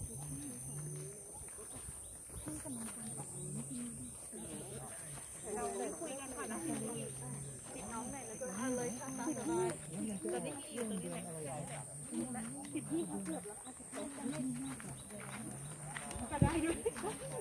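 Several people's voices talking at once, indistinct, with a steady high-pitched buzz throughout and a thinner high tone that stops about ten seconds in.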